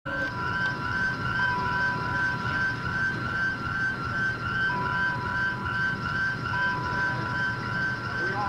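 An electronic alarm warbling in a fast, even repeat, about two and a half pulses a second, with a steady beeping tone that stops and starts, over a low rumble.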